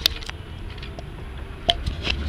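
Handling noise from a head-worn action camera being moved and remounted: a sharp click at the start and another near the end, with faint rubbing and ticks between, over the low rumble of the vehicle.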